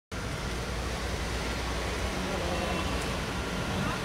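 Steady low rumble of an idling diesel bus engine, with indistinct voices in the background.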